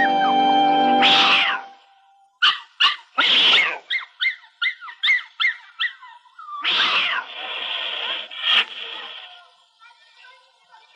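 Cartoon cat-and-dog scuffle sound effects: a cat hissing in harsh bursts and a quick run of about ten short, high cries. Background music stops about a second in.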